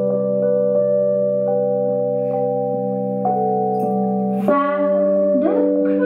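Slow keyboard chords held and sustained, with single higher notes changing over them about once a second and a chord change about four and a half seconds in. A woman's singing voice comes in near the end.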